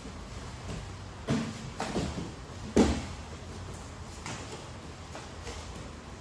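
A few dull thumps of grapplers' bodies landing on the foam training mats, clustered between about one and three seconds in, the loudest near the three-second mark, over a steady background hum.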